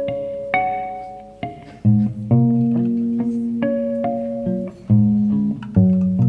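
Prepared electric guitar, with objects wedged and wrapped on its strings, plucked in a slow melody of single notes and low chords that ring and fade one after another.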